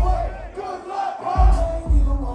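Concert crowd shouting along over a loud hip hop beat; the bass drum drops out for about a second in the middle, then comes back.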